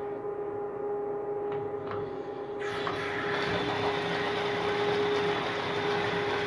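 Small electric water pump humming steadily as it drives a continuous flush through a miniature clay toilet with a concealed siphon jet, water swirling and rushing in the bowl. About two and a half seconds in, the rush of water grows louder.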